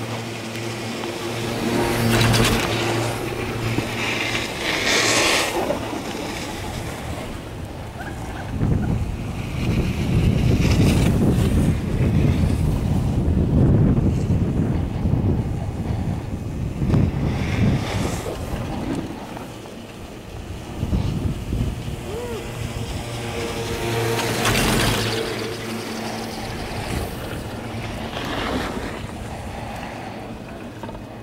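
Ride on a chairlift, the Beaver Run SuperChair: wind rushing over the microphone, with a low hum from the moving haul rope and tower sheaves. The hum is stronger near the start and again from about three-quarters of the way in, and there are a few louder rushes of noise.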